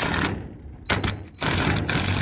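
Cordless drill with a quarter-inch hex driver bit running in several short bursts, driving self-sealing roofing screws into corrugated polycarbonate roofing panel.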